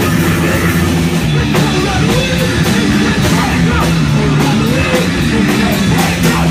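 Punk band playing live at full volume: electric guitar, bass guitar and drum kit, with a vocalist singing over them, recorded close up on a phone.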